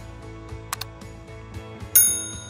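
Animated subscribe-button sound effects over soft background music: two quick mouse clicks about three quarters of a second in, then a bright bell ding near the end as the notification bell icon rings.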